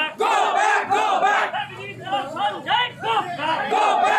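A crowd of men shouting protest slogans together, the chant repeating in rhythmic phrases.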